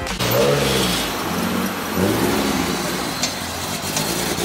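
A car engine revving twice, its pitch rising and falling back, once early and again about two seconds in, over general background noise.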